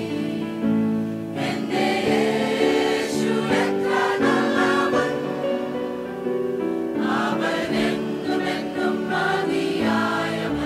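Mixed choir of women's and men's voices singing a gospel hymn in harmony, with long held chords.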